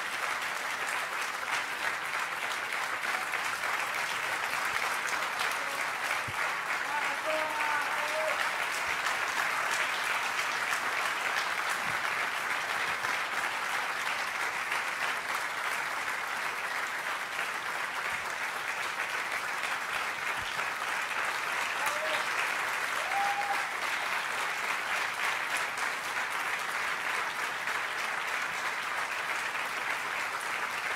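Large audience applauding without a break, a long ovation. A few brief calls ring out from the crowd about seven seconds in and again past twenty seconds.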